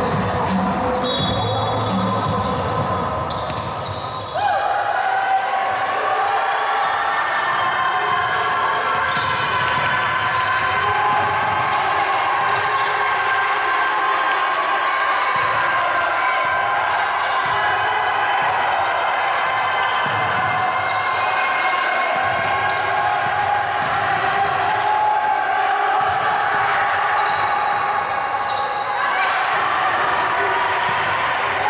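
Live sound of a basketball game in a large indoor hall: the ball bouncing on the hardwood court amid players' shouts and a steady din of voices. Arena music plays for the first few seconds, then stops.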